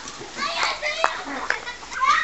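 Children's voices calling and shouting at play, with a single sharp click about halfway through.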